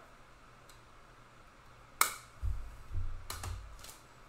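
One sharp plastic click about halfway through, followed by dull bumps and two lighter clicks: a trading card and its plastic card holder being handled and set down on a table.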